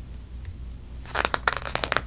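Computer mouse scroll wheel clicking, a quick run of ticks in the second half, over a low steady hum.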